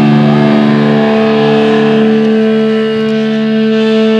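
Electric guitar and bass through distorted amplifiers holding a loud, steady droning note, with a higher tone joining about half a second in.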